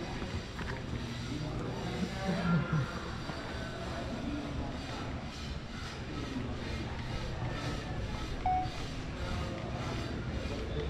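Steady background noise with faint music and brief snatches of distant voices.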